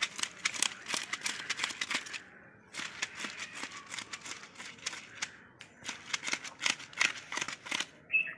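A knife scraping the scales off a rohu fish in rapid, rasping strokes. The strokes pause briefly about two seconds in and again around five and a half seconds.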